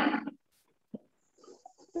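A woman's voice trails off, then a lull with one short, dull thump about a second in and faint murmurs from the call, before speech resumes at the very end.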